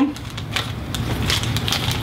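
Plastic packaging rustling and crinkling as small parts, among them a plastic bag of screws, are pulled from a car stereo's cardboard box, with many small irregular clicks over a steady low hum.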